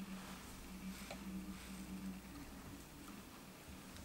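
Faint rustling of fingers handling fly-tying materials at the vise, with a few soft touches, over a steady low hum.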